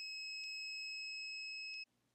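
Digital heat press timer beeping once, a steady high-pitched beep lasting nearly two seconds, signalling that the 50-second press time is up. Two faint clicks sound during the beep.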